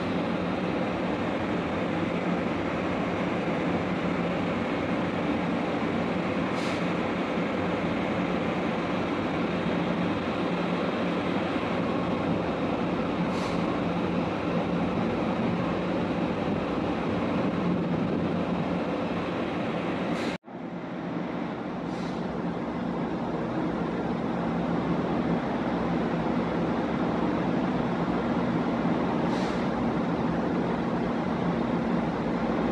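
Steady mechanical drone of offshore rig machinery, a dense rumble with a faint steady hum through it. It drops out for an instant about two-thirds of the way through, then resumes.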